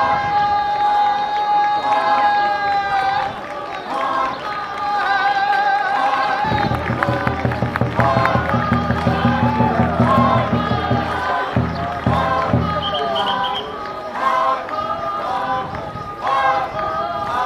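Traditional Naga folk dance song sung by a group of dancers in unison, with long held notes at first. From about six seconds in, a low rhythmic chant pulses under the singing for about five seconds, then stops.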